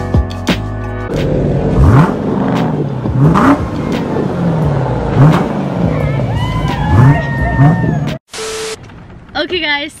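A Dodge Challenger's engine is revved hard again and again, each rev a rising sweep in pitch, for about seven seconds after a second of music, with a few high whistles over it late on. It cuts off suddenly, a short beep follows, then talk begins.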